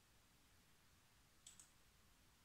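Computer mouse double-click: two quick, sharp clicks about a second and a half in, against near silence.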